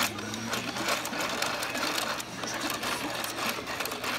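DX Build Driver toy belt's red crank handle being turned by hand, its plastic gear mechanism giving a fast, continuous run of clicks.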